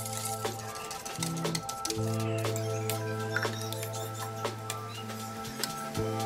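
Background music of slow sustained chords, with scattered light metallic clinks of a wire whisk against a stainless steel stockpot.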